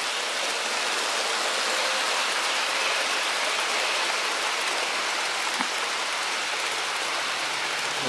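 Several HO scale model passenger trains running together on the layout's track: a steady rolling hiss of metal wheels on rails and small motors.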